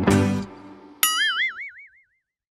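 A plucked-guitar jingle ends in the first half-second, then about a second in a cartoon "boing" sound effect sounds: a bright tone wobbling up and down in pitch that fades out within a second.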